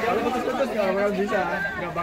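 Several people talking over one another: overlapping chatter of a small group's voices.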